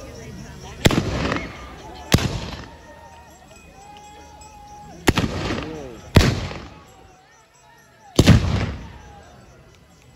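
Five loud gunshots from black-powder guns firing blanks, about one second in, then at two, five, six and eight seconds, each trailing off with a short echo. Voices call out between the shots.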